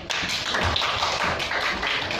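Classroom audience clapping, a dense patter of many hands.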